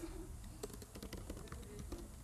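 Computer keyboard typing: an irregular run of key clicks as a line of code is entered.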